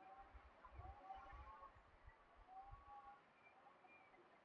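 Near silence: faint outdoor ambience, with a few faint, short, wavering pitched sounds and low rumbles.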